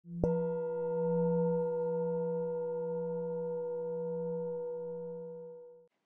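A bell-like tone struck once, ringing on for about five and a half seconds with a low hum and several higher overtones, slowly fading, then cutting off.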